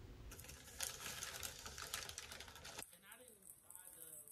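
Faint crinkling and rustling of a foil Takis chip bag as a hand reaches into it, a run of small crackles that thins out near the end.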